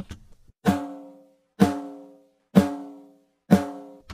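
Recorded snare drum played back dry, with no outboard processing: four single hits about a second apart, each ringing out with a pitched tone that dies away before the next.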